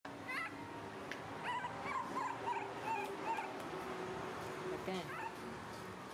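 A baby monkey giving a string of short, high, wavering cries, about ten of them, each bending up and down in pitch.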